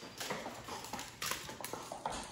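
Beagle puppy's paws and claws on a hard floor as she runs about after her bath, a quick irregular run of taps and scuffs.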